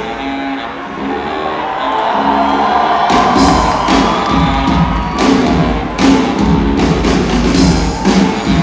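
Live brass band of sousaphone, trumpets, saxophones, snare and bass drum playing: for about the first three seconds the drums drop back while low brass notes are held, then the drum beat comes back in with the horns.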